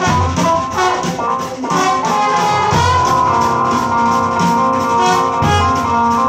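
Live improvised jazz on trombone, keyboard and drums. A quick-moving line of notes settles about halfway into long held tones, with a few low thumps underneath.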